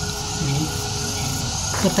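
Indistinct voices and room noise, with a faint steady tone held through most of the stretch.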